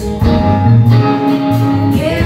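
Live band playing an instrumental passage: guitars over a steady bass line, with drums.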